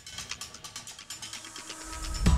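Rapid, irregular ticking and clicking sound effects in a TV news intro theme, with the music's bass and beat dropped out.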